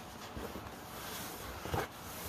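Construction paper being pressed and smoothed by hand onto the inside of a cardboard box, a faint rustling, with one brief louder sound near the end.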